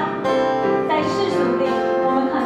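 Piano and acoustic guitar playing a slow, sustained accompaniment, with chords changing about every second.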